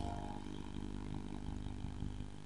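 A soft keyboard chord held steadily, playing as background music under the sermon.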